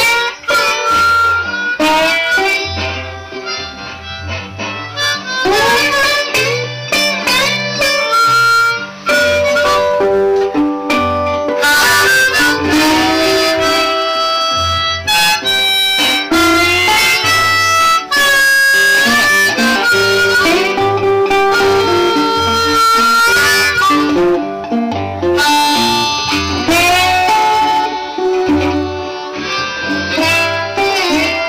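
Blues harmonica solo with bending, wailing notes over a metal-bodied resonator guitar and a low washtub bass line, an instrumental break with no singing.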